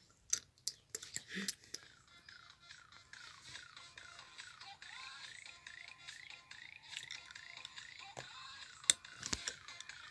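A DJ mixing app on a phone plays a faint run of quick falling chirps, about three a second, starting a couple of seconds in. Clicks from fingers tapping the phone's touchscreen come at the start, and a sharper click comes near the end.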